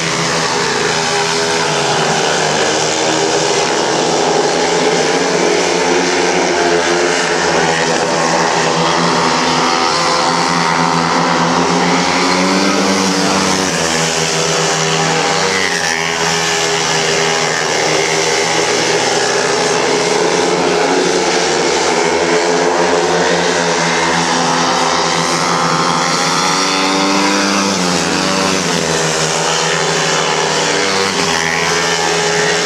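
Speedway motorcycles racing on a dirt track. Their engines run hard without a break, the pitch rising and falling again and again as the riders open and close the throttle through the bends and straights.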